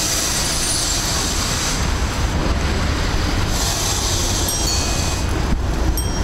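Steady city traffic noise heard from a moving bicycle, with a large truck close alongside and wind rumbling on the microphone; the hiss swells and eases a couple of times.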